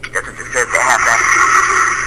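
A sound-effect recording played back: a steady, wavering high-pitched drone that comes in about half a second in, with brief voices over it.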